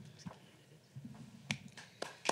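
Audience finger snaps in appreciation of a poem just read: a few scattered sharp snaps, the strongest about a second and a half in, with more joining near the end.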